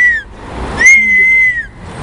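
A girl's high-pitched squeal: a short one at the start, then a longer one held steady for nearly a second.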